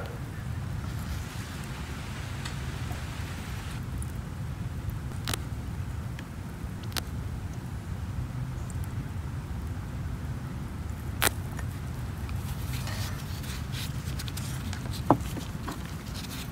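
A few light clicks and taps of a plastic transfer pipette against a glass nail-polish bottle and plastic cup while the bottle is filled with solution, the sharpest about eleven seconds in, over a low steady background hum.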